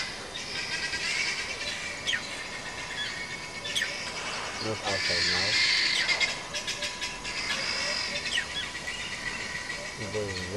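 Wild birds singing and chirping all through, with many short high calls overlapping. About five seconds in there is one brief low wavering sound, like a voice or a bleat.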